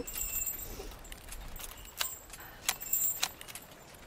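Metal swing chains jangling, with a few sharp clicks between about two and three and a half seconds in.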